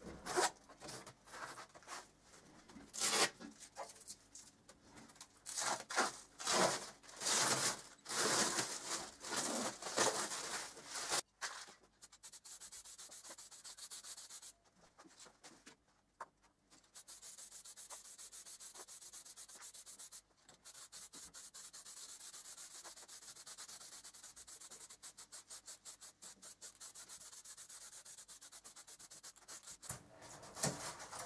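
Thin polycarbonate sheet discs rustling and scraping as their protective plastic film is peeled off and they are handled, in irregular strokes for the first ten seconds or so. Then an aerosol spray-paint can hissing steadily as the discs are sprayed, with a couple of short pauses.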